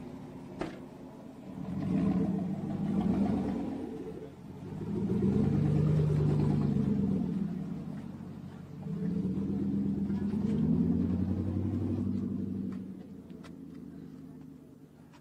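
A pickup truck's engine revving in three loud surges as the truck accelerates away, each swell rising and falling, the sound fading as it drives off near the end. A short sharp thud about half a second in, the driver's door shutting.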